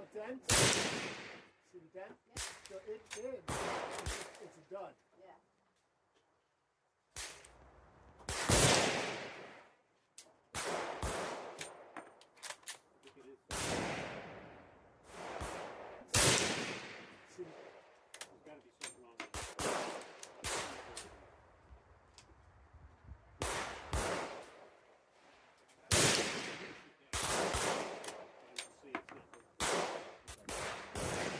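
Rifle fire from a Danish Krag-Jørgensen M1889 in 8x58R, fired repeatedly from a full magazine: a dozen or so sharp shots at irregular gaps of one to three seconds, each trailing off in a long echo. Shots from a neighbouring shooter's rifle are mixed in. The loudest reports come about half a second in and near the nine-second mark.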